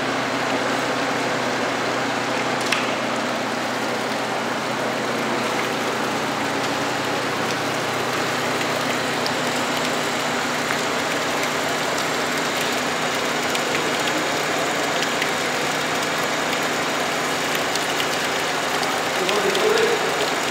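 Steady machine hum with a constant hiss, as of the motors of a homemade refrigeration and air-conditioning rig running.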